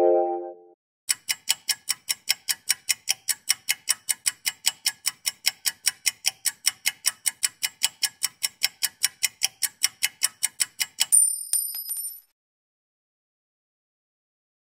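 A countdown-timer sound effect: a clock ticking fast, about four ticks a second for some ten seconds, ending in a bright bell ding as the time runs out. At the very start a short keyboard chord dies away.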